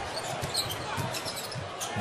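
A basketball being dribbled on a hardwood court, short bounces over the steady noise of an arena crowd.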